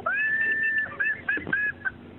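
Electric violin bowed in speech-like phrases that mimic a talking voice: one long held note that slides up at the start, then a run of short, bent notes.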